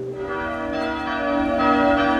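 Church bells ringing, several bells sounding together in a dense, sustained peal that comes in just after the start.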